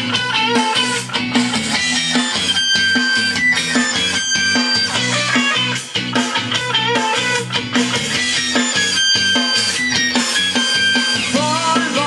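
Guitar-led music played from a docked iPhone through Olasonic TW-D7IP egg-shaped desktop USB speakers, steady and fairly loud, with a voice coming in near the end.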